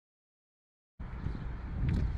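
Dead silence for about the first second, then outdoor wind noise on the microphone cuts in abruptly: a low rumble, with a couple of light clicks near the end.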